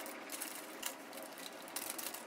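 Faint rustling of a plastic cake-mix pouch and scissors being handled, with a few light clicks.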